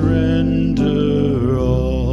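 A congregation singing a hymn with keyboard accompaniment, holding long notes over sustained low chords, with the voices wavering in vibrato in the second half.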